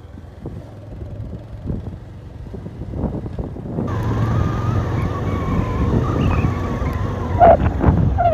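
Vehicle engine running while driving along a road, with wind buffeting the microphone; the sound is muffled for the first four seconds, then clearer, with a steady wavering whine. Near the end a few short, loud honk-like calls break in.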